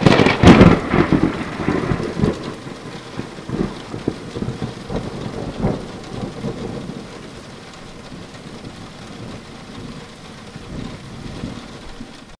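A thunderclap that cracks and rumbles loudest in the first second, with further rolling rumbles over the next few seconds, over steady rain that carries on after the thunder fades.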